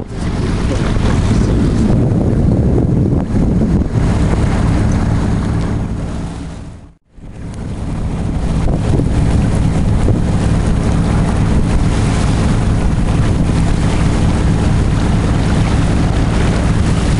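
Wind buffeting the microphone aboard a sailing yacht under way, over a steady low engine hum and the rush of water along the hull. The sound fades out and back in about seven seconds in.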